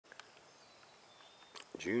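Quiet outdoor background with a couple of faint clicks at the start and a faint, thin, high tone in the middle, then a man's voice begins near the end.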